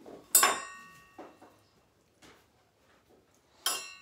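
Glass clinking as a glass bowl of raspberries knocks against a tall glass jar of sangria while the berries are added: a sharp, ringing clink about a third of a second in, a lighter tap around a second, and another sharp clink near the end.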